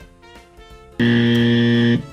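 Soft background music, then about a second in a loud, steady electronic buzzer tone sounds for about a second and cuts off abruptly: a game-show wrong-answer buzzer.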